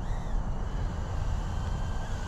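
Small ducted-fan quadcopter's motors whining as it hovers, a faint high tone that wavers slightly early on and then holds steady, over a low rumble.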